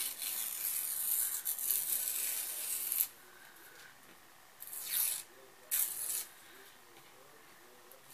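A sheet of printer paper being torn by hand along its edge: one long, slow tear lasting about three seconds, then two short tears about a second apart.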